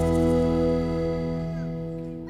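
Background music: a strummed guitar chord ringing out and slowly fading.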